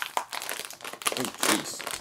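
Plastic snack bag crinkling as it is pulled open by hand.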